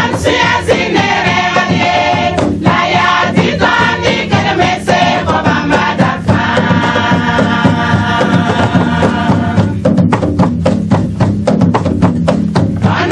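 A women's choir singing a gospel song to hand percussion, the beat steady throughout, with a quick run of strokes near the end.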